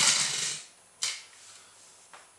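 Pneumatic air engine of a toy air-powered car, released on the floor, running with a brief rattle that dies away within about half a second: the engine stalls instead of driving the car along. A single sharp plastic click follows about a second in.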